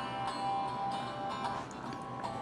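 A song playing from the 2014 Key Ingredient recipe tablet's built-in music player. It starts right at the outset with long, steady held notes.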